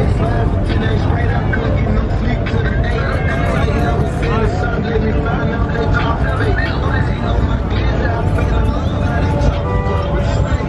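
Busy street at a car meet: many voices talking and calling out over a steady rumble of running car engines, with music playing.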